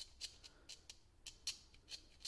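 A utility-knife blade scraping a brass bus bar in a run of about nine short, faint scratching strokes at an uneven pace. The scraping tests whether the bar is plated or the same metal all the way through.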